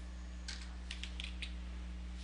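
Computer keyboard being typed on: a quick run of short keystroke clicks starting about half a second in, over a steady low hum.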